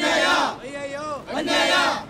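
A group of protesters shouting a slogan in unison, call-and-response style. Two loud shouts come about a second and a half apart, with a quieter chanted line between them.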